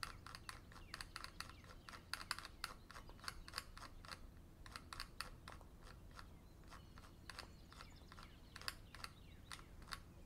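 Faint, rapid irregular tapping clicks of an Apple Pencil writing on an iPad's glass screen during note-taking, coming in quick clusters with a few short pauses.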